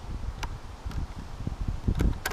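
A tight lashing strap on a car roof rack being tugged at, with uneven low knocks through the rack, a sharp click about half a second in and a heavier thump near the end, over wind rumble on the microphone.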